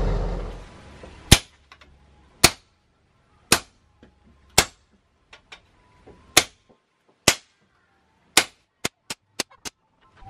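Hammer blows on a handled hot chisel set against a red-hot leaf-spring-steel golok blade on a small anvil: sharp ringing strikes about a second apart, then a quick run of lighter strikes near the end. A steady rushing noise stops within the first second.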